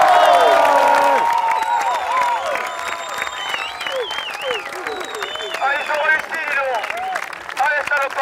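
An audience applauding, with voices calling out over the clapping; loudest at the start and gradually fading.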